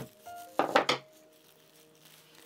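Hammer tapping against a wooden block inside a fur hat: one sharp tap at the start, then a quick run of two or three taps about half a second later. Faint steady background music tones run underneath.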